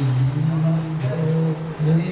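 A man's voice chanting mantras on a low, nearly level pitch, with phrases breaking off every half second or so.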